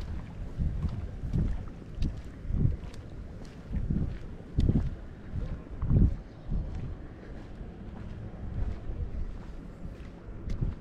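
Wind buffeting the camera microphone: a low, uneven rumble that swells and drops in gusts, with a few faint clicks.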